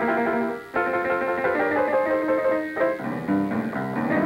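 Jazz piano played in quick runs of notes, with a short break a little over half a second in.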